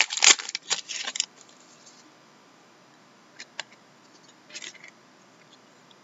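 A trading-card pack wrapper crinkling and tearing open for about the first second. Then it goes quiet apart from a few faint clicks and rustles as the cards are handled.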